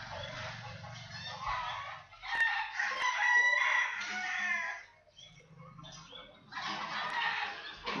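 Three long animal calls, each lasting a second or two, with a steady pitch: one at the start, one about two and a half seconds in, and one near the end.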